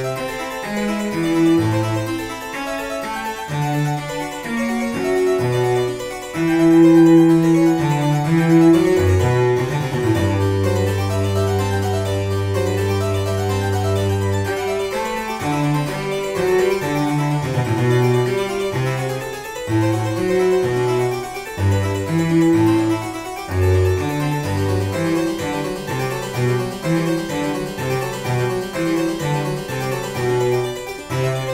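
Baroque cello and harpsichord playing the accompaniment of a fast 3/4 Presto in G major, with the flute part left out. The cello holds one long low note near the middle.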